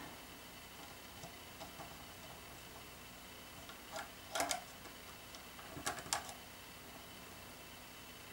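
Faint clicks and light snaps of rubber bands being stretched over the plastic pegs of a Rainbow Loom, in two short clusters about four and six seconds in.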